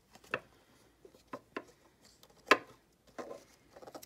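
Hands handling a cardboard box and plastic craft items: a few sharp clicks and taps, the loudest about two and a half seconds in, with faint rustling between.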